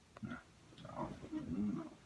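A man's quiet groans and grunts in short bursts, the sleepy sounds of someone struggling to get out of bed.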